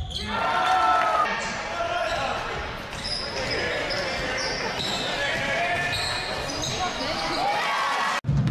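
Live sound of an indoor basketball game: the ball bouncing on the court, sneakers squeaking in short high chirps, and players and spectators calling out.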